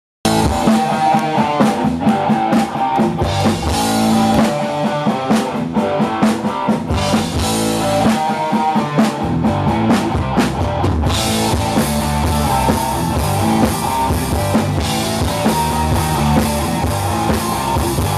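Rock band playing live on an open-air stage: drum kit and electric guitars in an instrumental stretch with no vocals. The sound fills out, brighter in the treble, about eleven seconds in.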